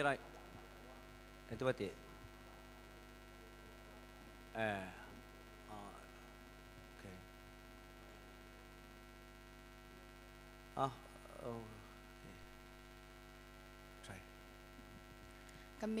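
Steady electrical mains hum from a stage sound system, with a few short, faint snatches of voice now and then.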